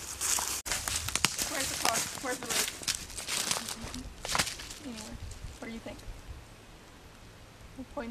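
Footsteps through dry fallen leaf litter, a dense run of crackling steps for about four seconds that then thins out and fades, with faint voices in the background.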